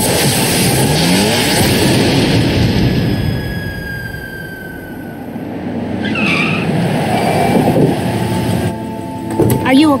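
Cartoon chase sound effects: a van's tyres skidding in a loud rushing noise that fades away over the first few seconds with thin falling whistles, then swells again before a voice comes in near the end.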